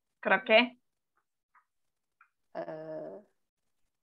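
Only brief voice sounds over a video call: two quick syllables just after the start, then a held hesitation sound like "uh" about two and a half seconds in.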